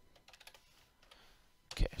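A few faint, light keystrokes on a computer keyboard within the first second.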